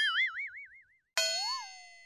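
Cartoon sound effects added in editing: a ringing tone with a fast wobbling pitch, like a boing, fading within the first second, then a second ringing effect with a brief upward-and-back swoop in pitch that dies away.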